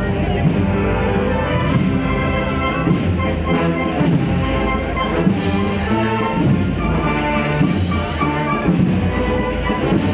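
Brass band playing a processional march, held brass chords over drums.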